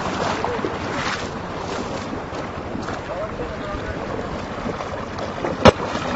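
Muddy floodwater rushing over and through an undersized bridge culvert, a steady wash of noise mixed with wind on a phone microphone. A single sharp click near the end.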